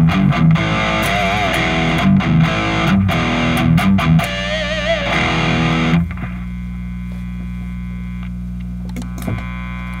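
Distorted electric guitar played through a Blackstar HT-Dual valve distortion pedal running a vintage 12AX7 tube: a picked riff with wavering vibrato on held notes, then a chord left ringing for the last few seconds.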